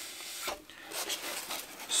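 Laminated chipboard panel being handled and shifted across a foam work surface, with a soft, low rubbing and scraping.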